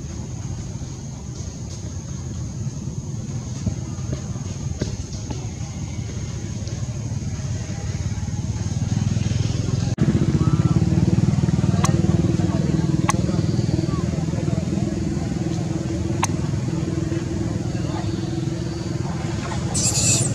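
Steady low rumble of a running motor, growing louder through the clip, with a steadier hum joining from about halfway through.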